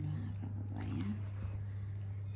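A creamy macaroni salad being stirred with a plastic spatula in a plastic mixing bowl, over a steady low hum. A brief rising voice-like call comes about a second in.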